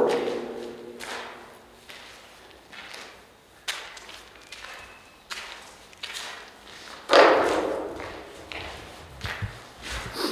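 Footsteps on a gritty, debris-strewn floor in an empty brick-vaulted room, echoing, about one step a second, with one louder thump about seven seconds in.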